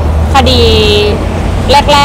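A woman speaking Thai into microphones, drawing one word out long, with a steady low rumble underneath.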